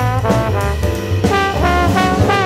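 Jazz trombone playing a blues line of short, separated notes, with bass and cymbals underneath.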